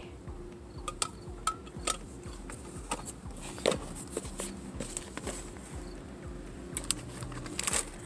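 Small objects being handled and shifted in a cardboard box: scattered taps and clicks as a metal case and plastic items are picked up and set down, over a steady low hum.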